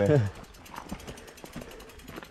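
A man's voice trails off at the start, then a mountain bike is pushed up a rocky dirt trail: faint crunches of tyres and footsteps on loose stones, with a fast, faint ticking of the freewheel hub.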